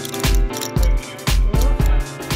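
Background music with a heavy, steady bass beat, about two beats a second.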